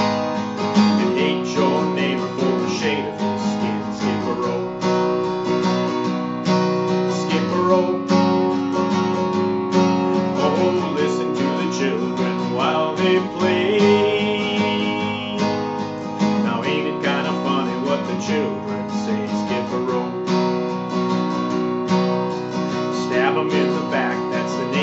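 Martin D-28 acoustic guitar strummed in a steady country rhythm, alternating G and E minor chords, with a man's voice singing along in several phrases.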